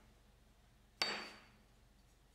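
A 1/8-inch bar of 1095 steel set down on a metal workbench top: one sharp clink about a second in, with a short metallic ring.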